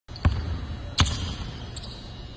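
A basketball bounced twice on a hardwood court, about three-quarters of a second apart, each bounce echoing briefly in the large gym.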